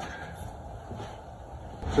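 Quiet steady background noise with a few faint footsteps.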